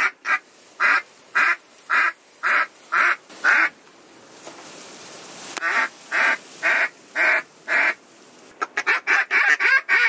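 Duck calls blown by hunters, sounding a series of loud quacks about two a second in two runs of six or seven notes, then a faster string of short quacks near the end, calling to ducks flying overhead. A brief rush of wind noise fills the pause in the middle.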